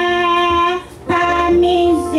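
A woman singing a hymn into a microphone, holding one long note, breaking briefly for breath about a second in, then starting the next note.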